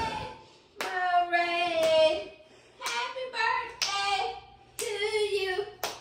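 A young girl singing in four short, high-pitched phrases with held notes while clapping her hands, a clap at the start of each phrase.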